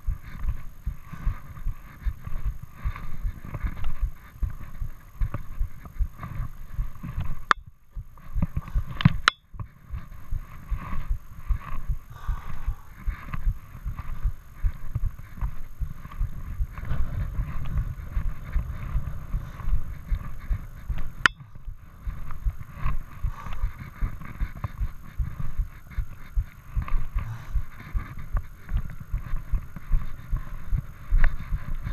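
Dense, irregular low thumping and rubbing from a body-worn action camera jostled by its wearer's steps, with footsteps underneath; it breaks off briefly twice, about eight and nine seconds in.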